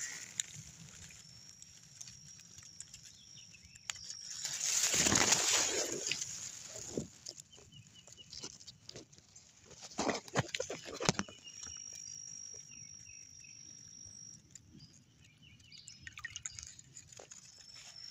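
Rustling and handling noise at the water's edge, loudest in a burst about five seconds in, with a few sharp clicks near the middle. A faint, thin, steady high tone runs under it much of the time.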